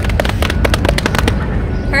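A rapid, uneven run of sharp claps or slaps, about ten a second, dying away a little over a second in, over a steady low rumble.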